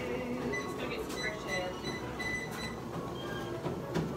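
Treadmill running steadily, with faint voices in the background.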